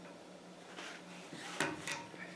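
Stiff steel sign-stake wire being bent by hand around a steel pin in a drilled bending block: a scrape of wire on metal about a second in, then two sharp metallic clicks near the end.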